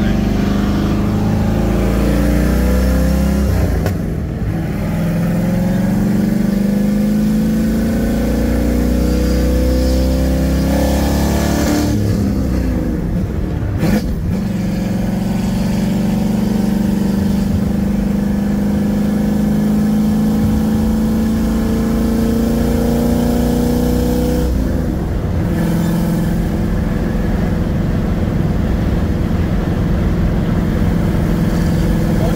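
Ford Maverick GT engine pulling up through the gears. Its pitch climbs steadily in each gear and drops back at upshifts about 4 seconds in, around 12 to 14 seconds in, and about 25 seconds in.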